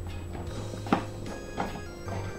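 Scissors cutting through the wall of a plastic soda bottle, with two sharp snips, one about a second in and one near the end, over steady background music.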